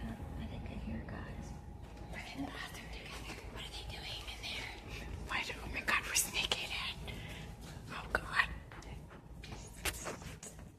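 Hushed whispering, with a few short clicks about six and eight seconds in.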